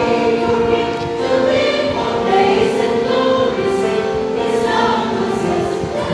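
A church choir, mostly women's voices with a few men, singing a hymn in harmony, with long held notes.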